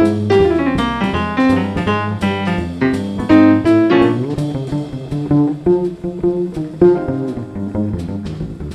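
Jazz piano solo on a Yamaha digital stage piano, quick runs of notes over a plucked upright double bass. About halfway through, the piano line grows sparser and the bass stands out more.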